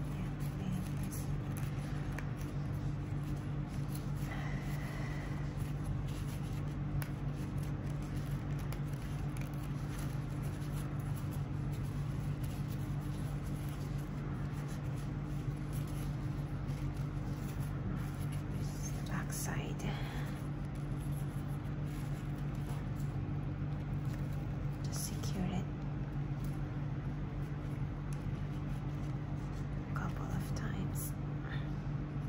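A steady low hum runs throughout, with a few faint rustles of ribbon and thread being handled.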